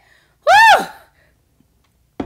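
A woman's loud "Woo!": a single whoop whose pitch rises and falls, about half a second long.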